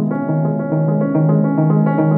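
Grand piano playing an evenly paced, repeating figure, low notes alternating under sustained higher ones.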